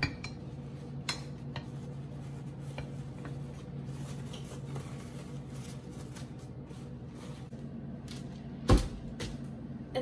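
Paper towel rustling and crinkling as it is pressed into a metal strainer on a crock pot, with faint clicks of the strainer against the pot and a steady low hum underneath. A single loud knock near the end.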